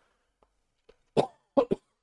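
A man coughing into his hand: one cough about a second in, then two quick coughs close together.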